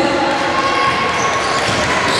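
A basketball being dribbled on a wooden gym floor, with players' voices in the hall.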